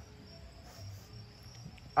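Steady high-pitched chirring of insects.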